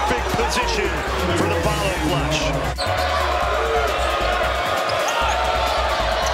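Basketball game sound: sneakers squeaking on a hardwood court and the ball bouncing, over arena music with a steady bass line. The sound breaks sharply at an edit about three seconds in.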